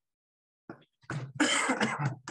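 A man coughing: one loud cough, close to a second long, in the second half.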